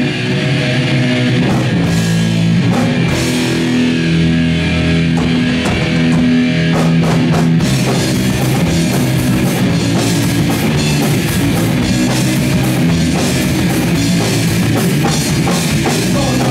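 Punk rock band playing live on electric guitar, bass guitar and drum kit. Held chords ring through the first half, then a busier drum-and-cymbal beat takes over from about halfway through.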